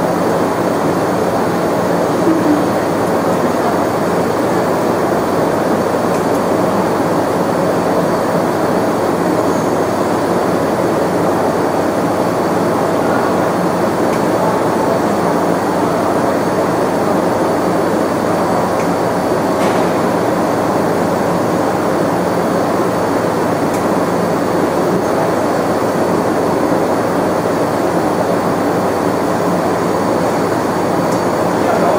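Fiber laser marking machine with a rotary attachment running steadily while it marks a glass bottle: a loud, even whirring noise with a faint low hum.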